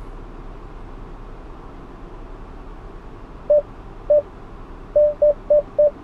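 The 2015 Chrysler 200C's parking-sensor chime sounds inside the cabin as the car backs into the space under automatic park assist. Single short beeps come about three and a half seconds in, then quicken to several a second near the end, the closing-distance warning for the obstacle behind. A low, steady cabin hum runs underneath.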